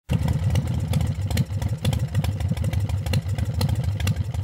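An engine running loudly with a rapid, uneven, lumpy beat, starting abruptly at the very beginning.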